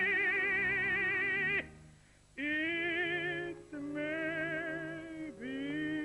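Operatic tenor voice singing long held notes with a wide vibrato over a soft orchestral accompaniment, breaking for a brief pause about two seconds in between phrases.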